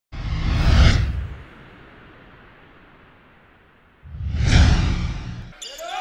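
Two whoosh sound effects of an intro graphic, about four seconds apart, each a swell of hiss over a deep boom; the first fades away slowly before the second comes in.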